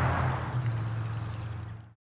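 Outdoor background noise, a low steady hum under a hiss, fading away and cutting off abruptly just before the end.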